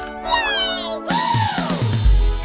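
A short cartoon animal cry, falling in pitch, over a commercial jingle's music, followed about halfway through by a sung "woo".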